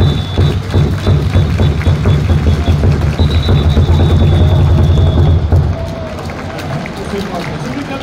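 Cheer music with a heavy bass beat played over stadium loudspeakers, with a voice and crowd noise mixed in; the bass drops away a little past the middle.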